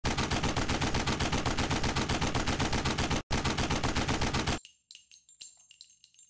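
Sound effect of rapid automatic gunfire, about twelve shots a second, with one short break just past three seconds, stopping suddenly about three-quarters of the way through. Scattered light clinks with a thin high ringing follow.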